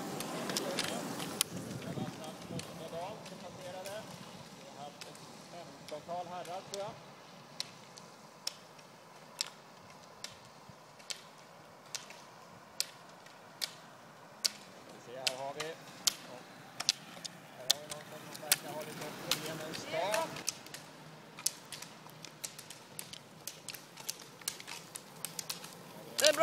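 Roller-ski pole tips striking asphalt: sharp, irregular clicks, becoming more frequent in the second half as several skiers pole past. Faint voices come and go in the background.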